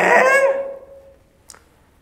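A man's drawn-out hesitant "eeh" while pondering a question, the pitch wavering at first and then held on one tone until it fades about a second in. A single faint click follows about a second and a half in.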